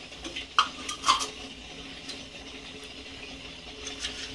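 A metal spoon stirring in a steel pot of chocolate and milk, knocking against the pot with a few sharp clinks in the first second and a half, over a steady faint low hum.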